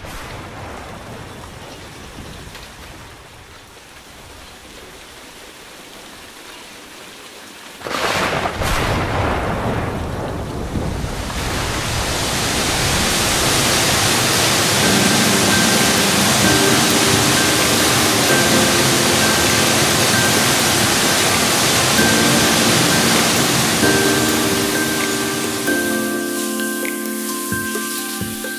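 A thunderstorm: a sudden thunderclap about eight seconds in, then heavy rain that builds up and keeps falling steadily, with soft sustained music tones joining over the rain in the second half.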